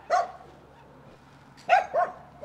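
A dog barking: one bark just after the start, then two quick barks near the end.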